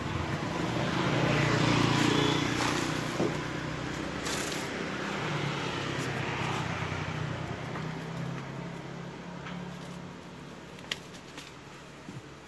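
A motor vehicle's engine running close by, a steady low hum at its loudest about two seconds in and then slowly fading away, over street noise. A single sharp click comes near the end.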